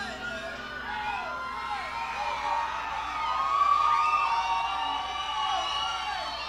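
Rock concert crowd cheering, with many voices whooping and screaming, swelling louder around the middle.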